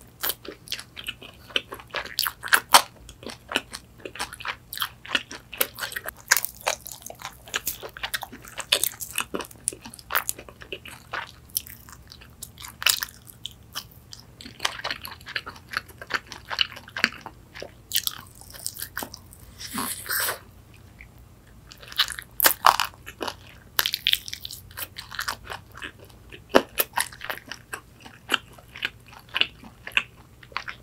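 Close-up crunching and chewing of crispy fried chicken wings: many sharp crunches of the fried skin, with softer chewing in between.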